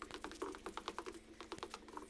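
Faint, rapid, irregular clicking, several clicks a second, over a steady low hum.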